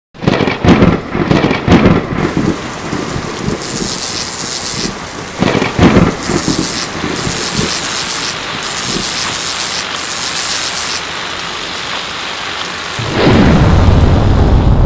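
Thunderstorm: steady heavy rain with cracks and rumbles of thunder in the first two seconds and again about six seconds in, then a loud deep boom near the end.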